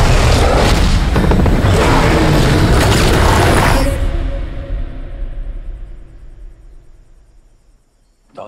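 Movie-trailer music with heavy booming hits, loud and dense for about four seconds. It then cuts out and leaves a low tone that fades away.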